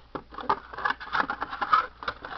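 Foil trading-card booster packs crinkling and a cardboard booster box rustling and scraping as they are handled, a quick irregular run of crackles and ticks.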